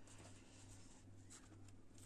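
Near silence: room tone with a steady faint low hum and faint scratchy handling of a cardboard box in the hands.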